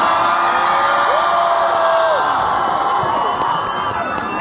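Large concert crowd cheering and screaming, many high voices overlapping. About a second in, one voice holds a long shout for about a second.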